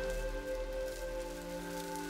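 Water spraying from a garden hose's spray nozzle onto foliage, a steady hiss, over soft music of held tones.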